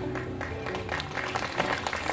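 A small audience applauding at the end of a song, with the band's instruments still sounding faintly underneath.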